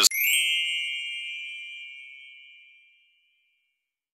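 A single bell-like ding that rings out and fades away over about three seconds.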